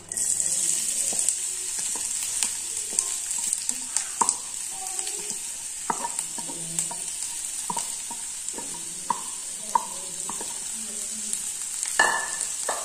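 Chopped raw potato dropping into hot oil with mustard seeds in a kadai, sizzling steadily from the moment it goes in. A wooden spatula knocks and scrapes against the steel bowl and the pan throughout.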